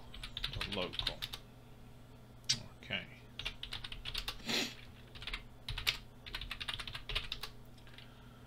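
Typing on a computer keyboard: short bursts of quick keystrokes with brief pauses between them.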